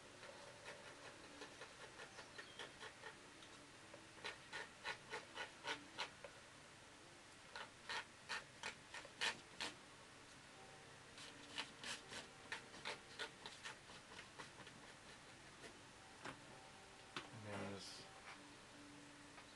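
Edge of a plastic card scraped in short quick strokes across wet watercolour paint on paper, lifting out the shapes of small stones. It comes in several runs of strokes, about four a second, faint.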